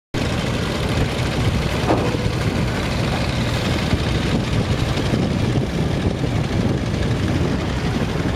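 Ferry engine running steadily, an even low rumble with no change in pace.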